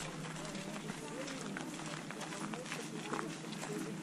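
Faint, indistinct chatter from a group of people walking, with scattered footsteps.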